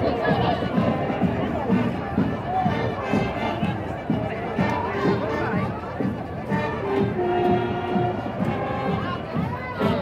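Marching band playing in a parade: drums keep a steady beat under held horn notes, with crowd chatter around.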